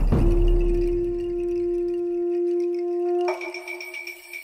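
One long, steady horn-like blast, held for about three seconds over the fading rumble of a deep boom. Near the end, bright chiming music takes over.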